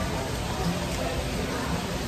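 Background room noise with faint music and distant voices, over a steady crackly hiss.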